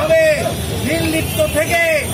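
Crowd of marchers shouting slogans in a rhythmic chant, one short rising-and-falling call after another.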